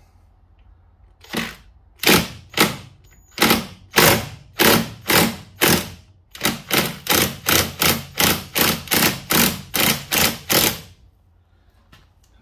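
Ryobi cordless impact wrench working a nut on a motorcycle engine crankcase in about eighteen short trigger bursts, roughly two a second, stopping shortly before the end.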